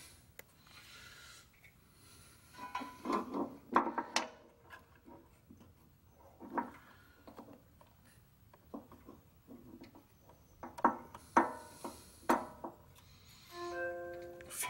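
Hand work on a small-engine carburetor: scattered clicks and rubbing of small metal parts as the governor spring, throttle linkage and fuel line are worked loose. Short ringing metallic twangs are heard a few times, and a few clear held tones come near the end.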